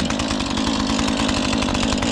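Husqvarna 135 two-stroke chainsaw running steadily, without revving, moments after a cold start.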